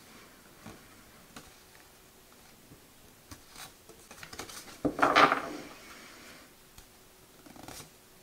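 Tarot cards being flipped through by hand: card stock sliding and rubbing against card, with a few light taps. The loudest is one card drawn across the deck about five seconds in.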